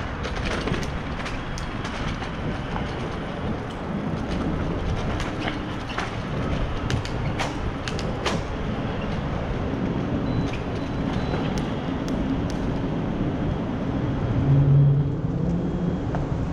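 Bicycle rolling fast over rough alley pavement: steady tyre and wind noise on a bike-mounted action camera, with sharp clicks and rattles from bumps. Near the end, a brief louder low hum.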